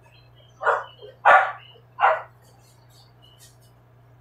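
A dog barking three times in quick succession, the second bark the loudest.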